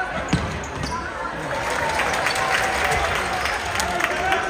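Futsal ball being kicked and striking the hard indoor court, a sharp knock about a third of a second in and a few lighter touches, over voices calling out in the echoing sports hall.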